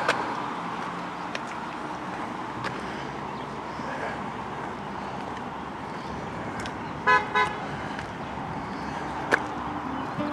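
A car horn gives two short toots about seven seconds in, over the steady hiss of passing street traffic.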